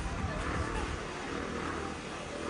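Off-road Jeep Wrangler's engine running with a low rumble while the vehicle sits nosed into a mud pit, with voices of onlookers mixed in.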